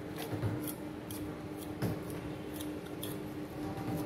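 A beagle licking vanilla ice cream from a stainless steel bowl: wet tongue strokes with irregular clicks and scrapes against the metal, about two to three a second.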